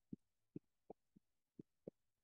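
Faint, soft clicks of a computer mouse and keyboard, about six in two seconds, with near silence between them.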